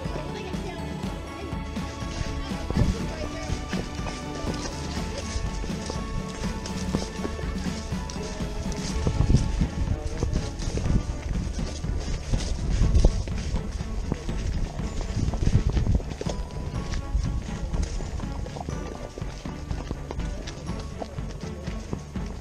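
Music over the hoofbeats of horses walking on a dirt trail: a run of dull thuds that grows heavier from about nine seconds in and eases again a little after sixteen seconds.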